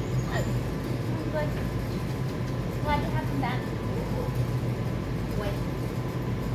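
A steady low hum fills the room throughout, with faint, indistinct voices over it, clearest about halfway through.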